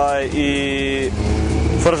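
A man's voice drawing out a long, hesitant 'uhh' mid-sentence, with a short burst of speech near the end, over a steady low engine rumble in the background.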